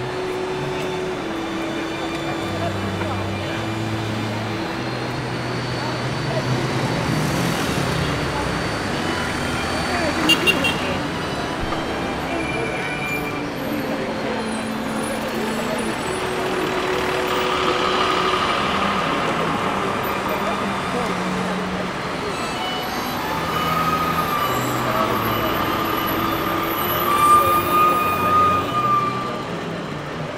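Busy city street: traffic noise and the chatter of a passing crowd, with brief louder sounds about ten seconds in and again near the end.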